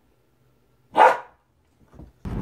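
A dog gives a single short bark about a second in.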